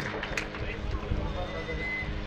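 Low-level hall ambience of children shuffling and moving about, with a few faint knocks and a low steady hum underneath.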